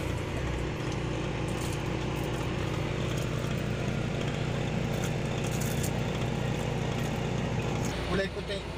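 Car engine and road noise heard from inside the cabin: a steady low hum.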